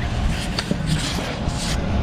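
Wind buffeting an action camera's microphone, a steady low rumble, with scattered knocks and rubbing as the handheld camera is swung around.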